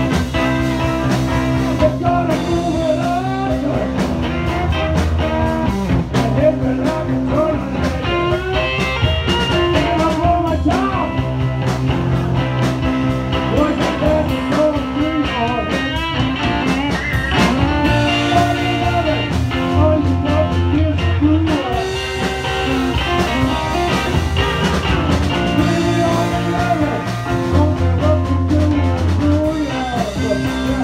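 Live blues-rock band playing: electric guitars, bass guitar, drum kit and saxophone, with a singer on a handheld microphone.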